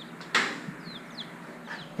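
Hinged wire-mesh access door of a wooden chick brooder cage swung open, with one short rattle about a third of a second in. Bantam chicks peep faintly twice about a second in.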